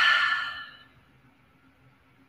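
A person's audible exhale out through the mouth, trailing off within the first second, followed by near silence with a faint low hum.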